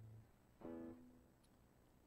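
Hollow-body electric guitar: a held low note dies out just after the start, then a single short note is plucked about half a second in and fades within half a second. The rest is faint room tone.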